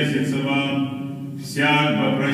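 A man's voice intoning Church Slavonic liturgical text in Orthodox recitative, held on a near-monotone reciting pitch. There is a brief breath pause about 1.4 s in before the chant resumes.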